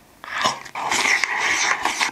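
Loud slurping and wet mouth noises as rice topped with orange egg yolks is shovelled from a bowl straight into the mouth with a wooden spoon, starting a moment in.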